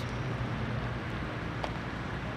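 Diesel engines of a column of heavy Mack army trucks running as the convoy rolls slowly past: a steady low rumble.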